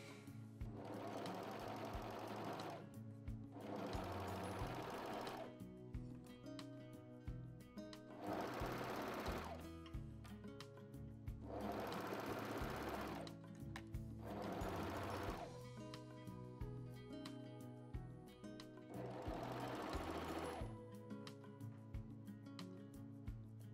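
Juki MO-2500 overlock machine (serger) stitching a side seam in jersey. It runs in about six spurts of one to two seconds each, with pauses between them as the fabric is guided.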